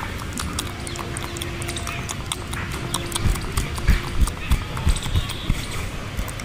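Close hand sounds: fingers rubbing and tapping right at the microphone, with small clicks throughout and a run of soft thumps about halfway through.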